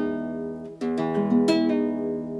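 Nylon-string classical guitar fingerpicked in E major, chord notes ringing on, with fresh plucks just under a second in and again at about one and a half seconds. A pull-off changes a note between them, leading into a three-note shape.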